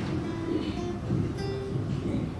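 Nylon-string classical guitar played slowly by a young beginner, single notes plucked one at a time to pick out a simple melody.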